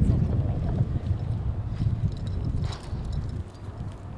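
Wind buffeting the microphone, a low rumble that eases off through the second half, with light scattered footsteps on pavement.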